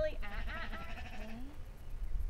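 A sheep bleating: one long, wavering call in the first second and a half, with low wind rumble on the microphone underneath.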